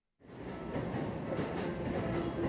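Wheels of a rolling suitcase rumbling steadily over a hard surface, fading in just after the start and growing louder.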